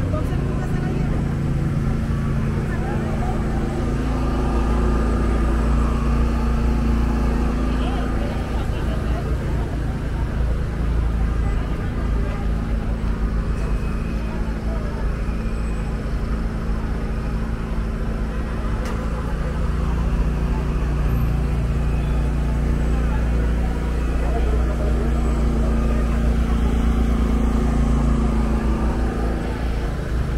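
Busy street ambience: a steady engine hum and low rumble, with people talking in the background.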